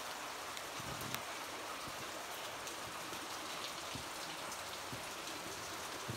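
Steady patter of water dripping and splashing onto rock, sounding like light rain, with a few slightly sharper drips standing out.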